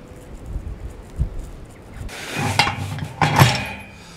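Galvanised steel gate hurdles clanking and rattling as they are handled: a couple of dull knocks about a second in, then a stretch of metallic clattering and clanks from about two seconds, loudest near the end.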